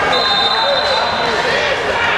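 Referee's whistle blown in one steady, high, shrill tone lasting about a second and a half, over chatter of players and spectators.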